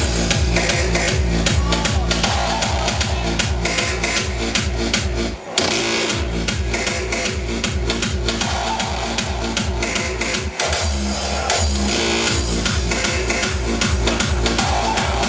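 Hardstyle dance music played loud from a DJ set over a PA. A heavy, fast, steady kick drum comes in at the start, with two short breaks in the beat about five and a half and ten and a half seconds in.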